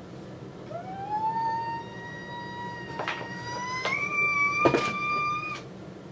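A woman's long, high-pitched excited squeal held on one note. It slides up at the start and steps up higher about four seconds in, with a few sharp clicks of packaging being handled.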